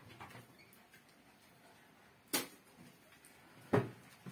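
Two short sharp knocks about a second and a half apart, over faint room tone.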